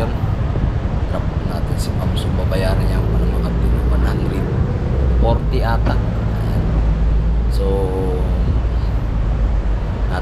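Motorcycle engine idling with a steady low rumble, amid street traffic noise.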